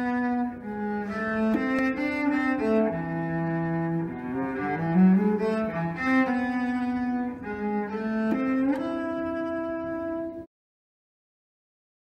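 Solo cello playing the prince's melody: a low, bowed line of held notes with slides between them, ending on a long sustained note. The sound cuts off suddenly about ten and a half seconds in.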